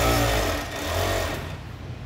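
Sewmac electronic industrial coverstitch machine stitching with two needles and the top-cover spreader, its motor running in two short bursts about a second apart, each rising and falling in pitch, then dying away. The running sound is soft and light.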